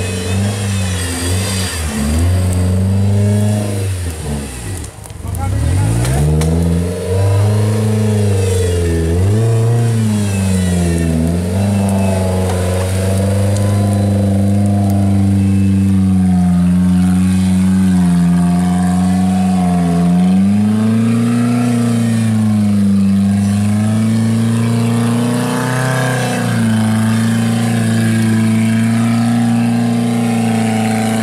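Off-road 4x4's engine revving hard as the vehicle works through deep mud. The revs rise and fall over and over for the first dozen seconds, then hold high and fairly steady.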